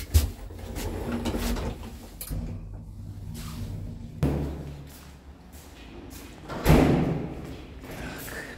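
An old passenger lift stopping with a sharp clunk just after the start, and its doors opening. This is followed by handling knocks and footsteps, with a louder door bang near the end.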